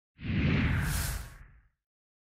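Whoosh sound effect for an animated logo sting: a deep rumble with a hiss that rises higher as it goes. It lasts about a second and a half and then fades out.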